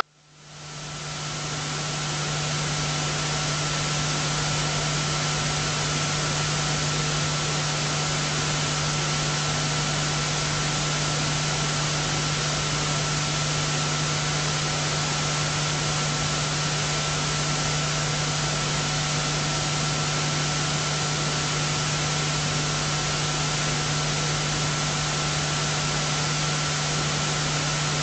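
Steady electronic hiss with a low, steady hum and a faint higher tone: the noise floor of a broadcast audio feed with no one speaking into it. It fades up over about the first two seconds, then holds level.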